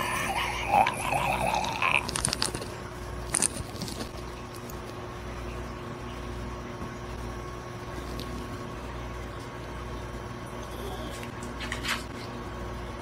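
A man's drawn-out, open-mouthed yell for about the first two seconds. Then come a few light clicks from a small glass bottle being handled, over a steady electrical hum.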